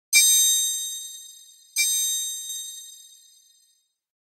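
A bell-like ding sound effect for a subscribe-button animation, struck twice about a second and a half apart, each ding bright and ringing as it fades away.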